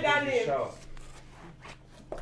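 A voice speaking through the first half second or so, then a quieter stretch with a few faint clicks before speech resumes.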